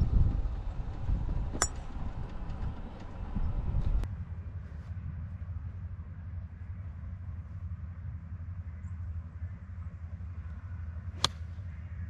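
A golf iron strikes the ball off the fairway: a single sharp click near the end, over a low steady rumble.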